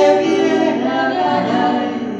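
Two women singing a tango duet into microphones, their voices held on long sung notes together.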